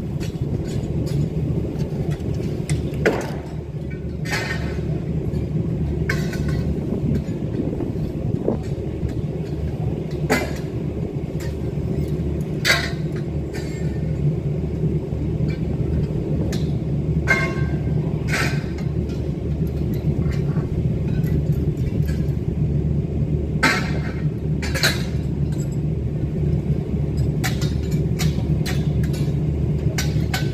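Steel scaffold tubes and fittings clanking now and then as a scaffold is dismantled, about a dozen sharp knocks spread out over a steady low rumble.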